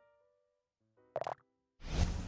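Explainer-animation sound effects: a pitched tone fading out, a short pitched pop about a second in, then a loud rushing whoosh near the end that fades as the screen transition begins.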